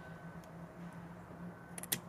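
Faint snips of small scissors trimming an oil-lamp wick: a light click about half a second in and a couple of quick clicks near the end, over a low steady hum.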